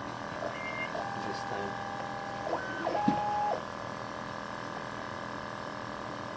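Stepper motors of a Hyrel Engine HR 3D printer moving its axes: a series of steady whines, each held at one pitch and starting and stopping abruptly. A short higher one comes first, then a longer one of about a second and a half, a brief higher one and another short one, all over a steady background hum.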